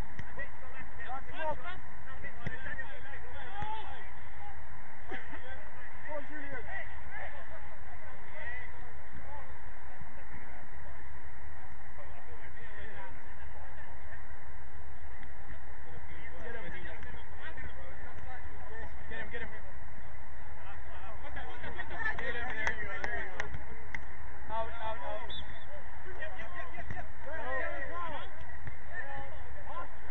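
Football players shouting and calling to each other across the pitch, in short scattered cries, busier in the last third, over a steady background hum.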